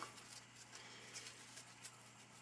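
Near silence: a faint room hum, with a few soft, faint rustles and ticks as ribbon fabric is pushed along its gathering thread by hand.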